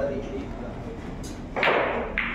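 Indistinct talk in a large, echoing room, with a short sharp noise near the end.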